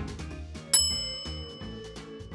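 A single bright, bell-like ding sound effect about three-quarters of a second in, ringing out for about a second over soft background music.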